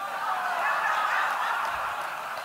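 Audience laughing together, a wash of many voices that swells and then thins out over about two seconds.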